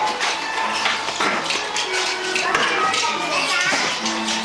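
Young schoolchildren's voices chattering and calling out over one another, with music playing behind them.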